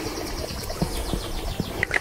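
Wooden pepper mill being twisted to grind pepper, with a few faint clicks, while a bird trills steadily in the background, a fast run of high chirps about ten a second that stops near the end.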